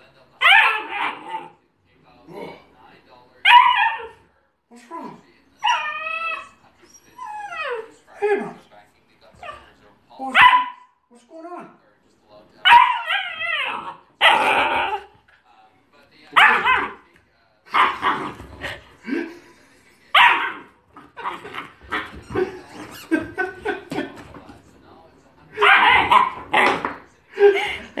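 Husky puppy barking and yipping in play, a rapid run of short, high calls, some of them wavering up and down in pitch.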